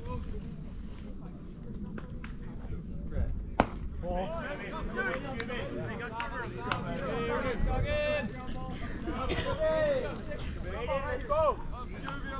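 Baseball players' voices calling out and chattering across the field, in short shouts. One sharp smack sounds about three and a half seconds in.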